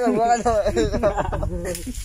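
Men talking casually among themselves.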